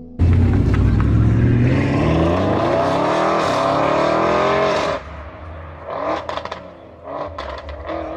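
Car engine revving hard: it starts suddenly, climbs in pitch for about five seconds, then cuts off. A few shorter, sharp bursts of noise follow near the end.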